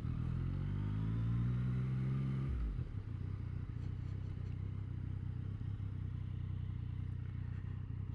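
Yamaha FZ-09's three-cylinder engine pulling away, its pitch rising for about two and a half seconds, then dropping suddenly as the throttle closes and running steadily at low revs while the bike rolls slowly.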